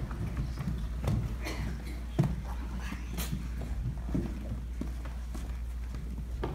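Footsteps and shuffling of several people walking about the floor, with irregular knocks and thuds, over a steady low hum.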